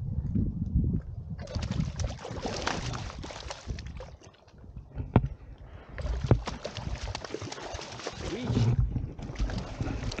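A hooked trout thrashing at the water surface beside a packraft, splashing in two long bouts with a shorter one near the end. Wind rumbles on the microphone underneath.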